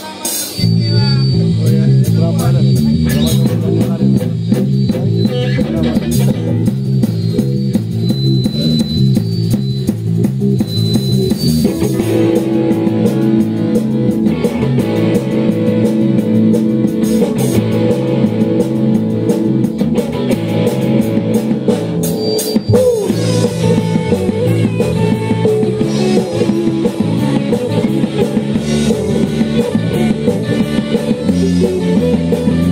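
Live rock band playing electric guitars, bass guitar and drum kit, with a repeating guitar riff. The band comes in about half a second in and fills out with a fuller sound around twelve seconds in.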